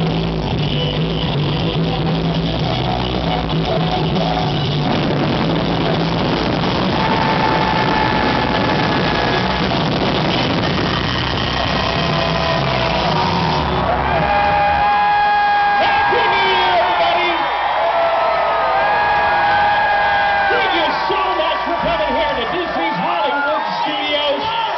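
Live rock band with guitars and drums playing loudly, then the band drops out about 13 seconds in and a crowd cheers, whoops and yells with long drawn-out cries.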